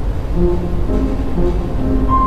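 Grand piano playing a passage of separate notes, entering about a third of a second in, over a steady low rumble.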